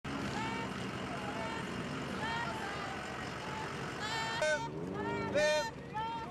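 Motor vehicles running slowly with faint voices in the background. From about four seconds in come a few loud shouted calls in quick succession.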